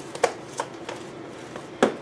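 A few light clicks and taps of kitchen items being handled, with one sharper knock near the end.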